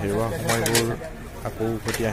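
Speech: a person talking in conversation, with no other clear sound standing out.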